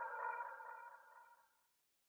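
Echoing, effects-laden guitar notes of the song's instrumental outro fading out, gone to silence about a second and a half in.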